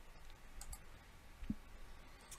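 A few faint clicks against quiet room tone, the clearest about a second and a half in: a computer mouse clicking to advance a presentation slide.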